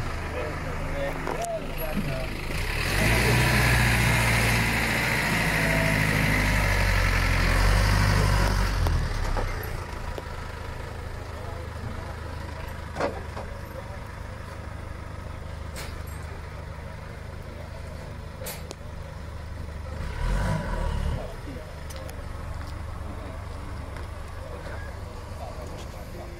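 A large vehicle's engine runs close by, loudest for about six seconds from around the three-second mark, then settles into a lower steady rumble. A second, shorter engine surge comes near the end, with a few sharp clicks in between.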